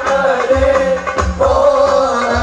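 Male voices singing a sholawat in Arabic, one wavering melodic line, over a steady rhythm of deep beats on hadroh frame drums (rebana).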